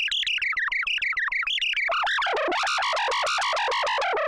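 Behringer Pro-800 eight-voice analog polyphonic synthesizer playing a fast run of short repeated notes while its panel knobs are turned, the pitch gliding down. About halfway through, the sound turns brighter and fuller.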